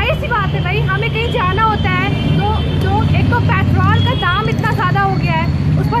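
A woman talking, over a steady low rumble of road traffic.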